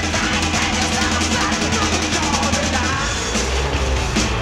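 Rock music with a drum kit, a sustained bass line and rapid cymbal ticks.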